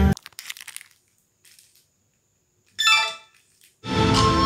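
Music playing through a 5.1 home-theatre speaker set cuts off suddenly, leaving a gap of near silence with a faint high whine. About three seconds in there is a short pitched sound, and the next piece of music starts just before the end.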